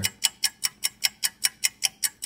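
Clock ticking in a rapid, even run, about five ticks a second, as in a countdown-timer sound effect.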